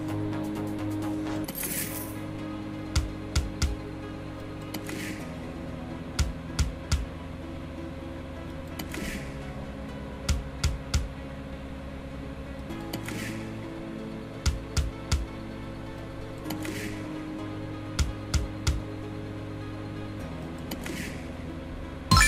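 Audio of the Fruity Gold online slot machine: a looping synth background tune, and a repeating spin cycle. Each spin opens with a short swish, then three sharp knocks follow as the reels stop one after another. The cycle comes about every four seconds, five or six times.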